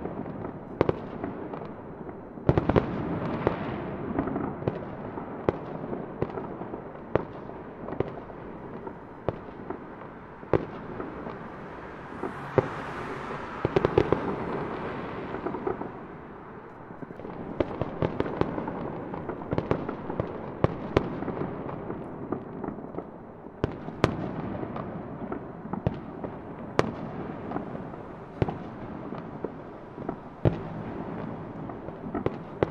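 Fireworks going off: a continuous run of sharp pops and cracks over a steady wash of bursts, with a hissing swell about twelve to fourteen seconds in.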